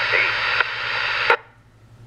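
An Icom IC-2400A FM transceiver's speaker plays a distant two-meter repeater signal: a voice in static hiss. A little past a second in there is a click as the signal drops and the squelch closes, and the sound falls to a faint hiss.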